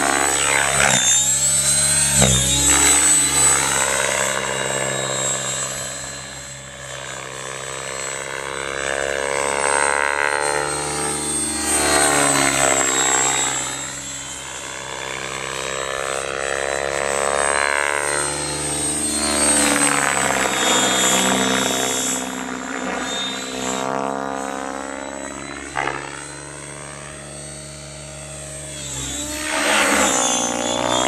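Electric radio-controlled helicopter (a 700E) in flight. A high whine from the motor and gears sits over the rotor drone, and the pitch and loudness rise and fall again and again as it swoops and makes passes.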